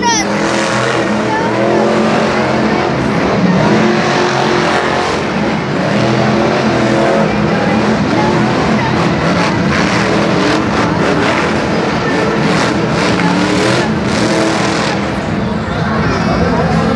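Monster truck engines running and revving loudly on a stadium dirt track, heard continuously from the stands.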